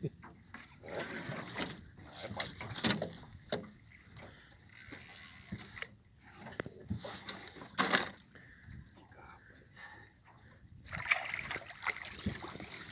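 A large pufferfish (baiacu) on a fishing line splashing and thrashing at the surface beside the boat near the end, as it is reeled up. Before that, scattered knocks and rustles of rod and reel handling against the boat.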